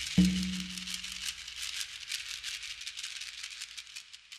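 The close of a worship song: a last low note is struck about a fifth of a second in and dies away, while a shaker keeps up a steady quick rhythm that grows fainter and fades out.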